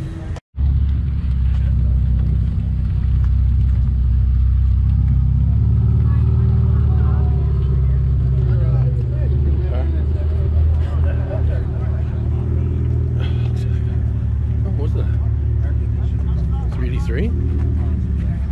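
A car engine running close by at low speed: a deep, steady rumble that rises slightly about two seconds in, with people talking underneath.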